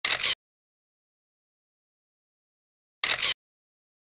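Dead silence broken twice by a short transition sound effect, about a third of a second each, once at the start and again three seconds later, as the slideshow moves to the next photo.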